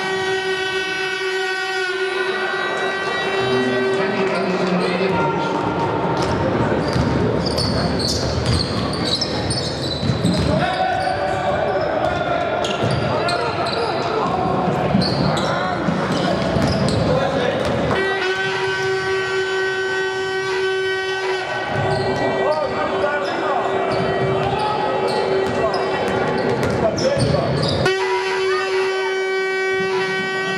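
Basketball game in a large reverberant sports hall: ball bounces and high sneaker squeaks on the hardwood court over crowd noise. A long, steady horn note sounds several times, for the first two seconds, for about three seconds past the middle, and again near the end.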